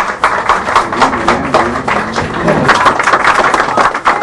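A small crowd applauding, many hands clapping unevenly, with voices calling out underneath.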